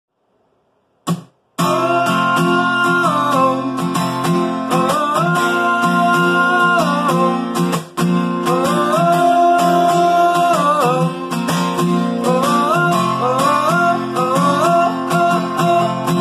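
Steel-string acoustic guitar strummed in a steady rhythm as a song's intro. It starts after about a second of silence and a short click.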